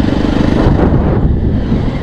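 Jawa Perak motorcycle's single-cylinder engine running steadily as the bike rides along, with wind noise on the microphone.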